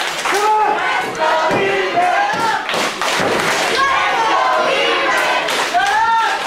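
Several heavy thuds of wrestlers striking each other and hitting the ring mat, over voices calling out from the crowd.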